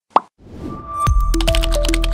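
A single short pop, then a rising swell leading into an electronic outro jingle that starts about a second in, with a heavy steady bass and a melody stepping between short notes.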